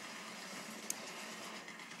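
Small electric air pump running with a steady hum, with one sharp click a little before the middle.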